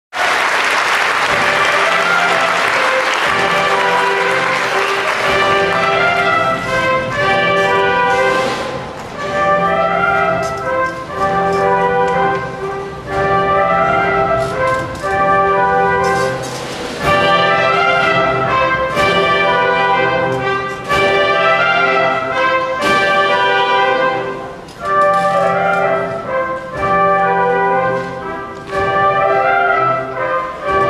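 Audience applause that fades out over the first few seconds while a theatre pit orchestra plays brass-led music in short phrases that repeat about every two seconds.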